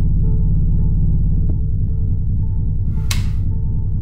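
Low droning ambient film score running throughout, with a faint tick about a second and a half in and a sharp click of a wall light switch being flipped about three seconds in.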